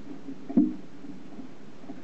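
Onboard audio from the CSXT GoFast amateur rocket in flight: a steady low hum from inside the airframe. There is one sharp knock about half a second in and a few faint ticks after it.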